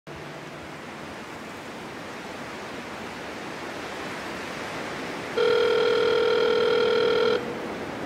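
Intro sound effect: a steady hiss slowly grows louder, then a loud, steady electronic beep tone, like a telephone tone, sounds for about two seconds and cuts off suddenly, leaving the hiss.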